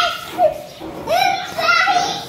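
Young children's high-pitched voices at play: a string of short cries and calls, one after another.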